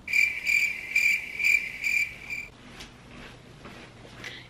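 A loud, high-pitched pulsing chirp, about three pulses a second, that starts suddenly and stops abruptly after about two and a half seconds.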